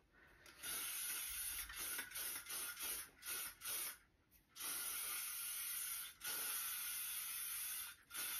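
Aerosol hair spray (a shine spray) hissing from the can in a series of bursts: one long spray about half a second in, several short puffs between about two and four seconds, then two long sprays through the second half.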